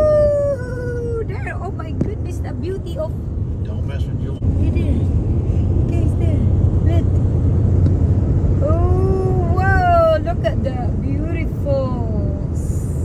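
Road and engine noise of a car cruising on a highway, heard inside the cabin as a steady low rumble. A voice holds long sliding notes over it near the start and again about nine seconds in, with shorter pitched phrases between.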